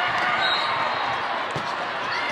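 Volleyball rally: a few sharp hits of arms and hands on the ball, the clearest about one and a half seconds in, over a steady hubbub of crowd voices.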